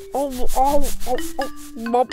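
Cartoon background music over a quick rhythmic scrubbing sound, about five strokes a second, as of a stained cushion being rubbed at to clean it.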